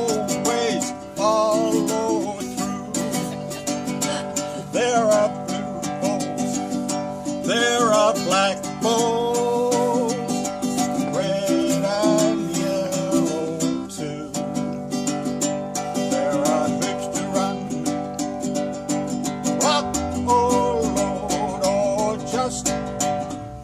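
Ukulele strummed steadily, with a man's voice carrying a sung melody over it.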